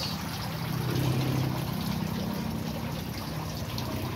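Water trickling and pouring steadily as it flows through a small pump-fed aquaponic system's grow pipes. A low hum swells up and fades in the middle.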